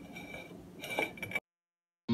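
A mandoline slicer over a glass dish as zucchini is sliced, with light clinks and a brief slicing stroke about a second in. The sound cuts off abruptly to silence after about a second and a half.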